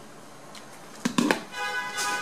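A hot glue gun knocks down onto a tabletop in a few quick clicks about a second in. A steady held tone follows.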